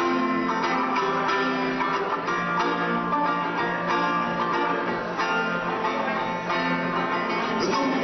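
Live solo acoustic playing on a plucked string instrument: an instrumental stretch of strummed and picked notes in a folk song. A voice comes back in with a rising note near the end.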